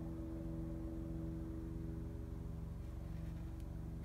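Steady low hum made of several steady tones, unchanging throughout, with no handling noises.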